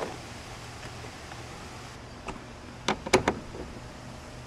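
A screwdriver and a plastic licence-plate frame being worked loose from a truck's rear bumper. There is a click at the start, then a handful of sharp clicks and ticks in the second half, over a faint steady hum.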